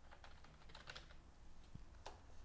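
Faint computer keyboard typing: a quick run of about nine keystrokes typing out a single word.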